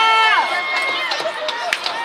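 Young voices chanting a cheer together: a drawn-out held shout that breaks off about half a second in, followed by a fainter held call.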